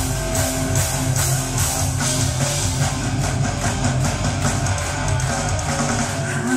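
Live heavy metal band playing an instrumental passage: distorted electric guitars over a steady drum beat, with the crowd clapping along to the beat.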